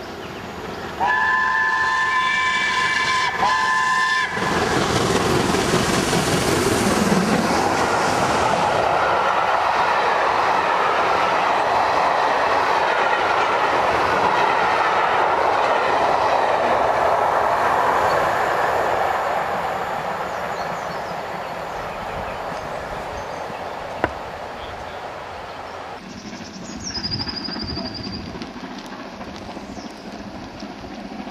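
Steam locomotive 70000 Britannia, a BR Standard Class 7, sounds its whistle in two blasts, several notes sounding together. It then passes with its train of coaches: a long, loud rush of exhaust and wheels on rail that fades away in the second half.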